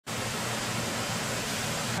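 Steady, even rushing noise with a low hum underneath.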